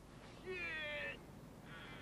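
Two meow-like calls: a longer one with a slightly falling pitch about half a second in, and a shorter one near the end.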